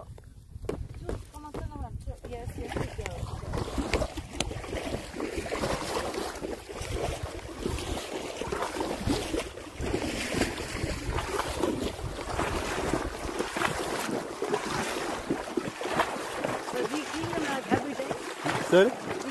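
Horses wading through shallow floodwater, their hooves sloshing and splashing steadily. Wind buffets the microphone throughout.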